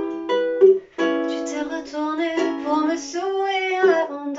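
Ukulele played in chords as song accompaniment, with a woman's voice holding sung notes over it.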